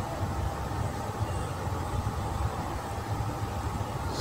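A quiet, steady low rumble of background noise with no distinct events.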